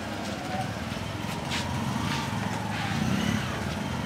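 Outdoor ambience: a steady vehicle engine noise that swells slightly through the middle, with faint voices of people nearby.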